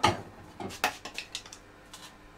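Knocks and clatter of hard pieces as the burnt remains of a microwaved car key are handled inside a microwave oven: a loud knock at the start, another just under a second in, then a few lighter clicks.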